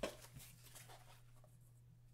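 Small white cardboard card boxes handled with gloved hands: a light knock right at the start, then faint scraping and rubbing of cardboard that thins out after about a second, over a steady low hum.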